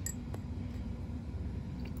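A few faint light clicks of a plastic transfer pipette against glass, as water is drawn from a beaker and squirted into a cuvette, over a steady low room hum.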